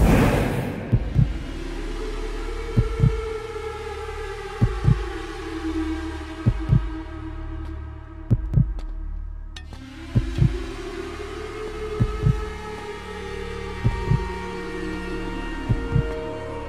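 Tense film score: pairs of short low thumps, like a heartbeat, about every two seconds over held drone tones that swell and fade.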